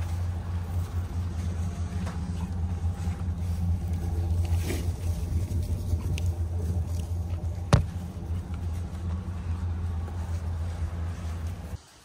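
Pickup truck engine idling steadily, with a single sharp knock about eight seconds in. The engine sound cuts off abruptly just before the end.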